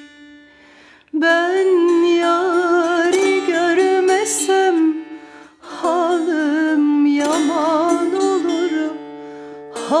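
A woman sings a Turkish folk song (türkü) in long, ornamented phrases with a wavering pitch, accompanied by a plucked ruzba. The voice drops out briefly at the start and around the middle before the next phrase.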